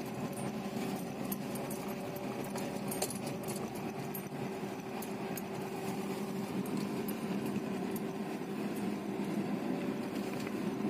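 Car engine running at low speed, a steady hum heard from inside the cabin, with scattered light clicks over it.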